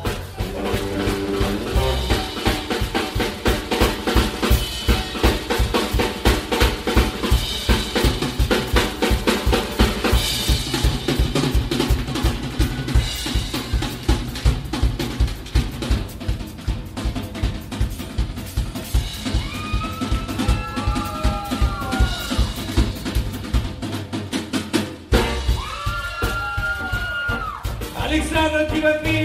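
Live drum solo on a rock drum kit: fast snare rolls and bass-drum hits with rimshots, over a bass line. Pitch-bending melodic notes come in over the drums in the last third.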